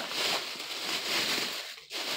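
A thin plastic shopping bag rustling and crinkling as a hand rummages inside it, fading out near the end.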